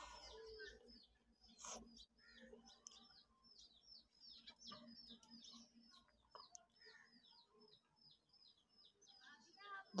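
Near silence, with a faint run of quick, high chirps repeating several times a second.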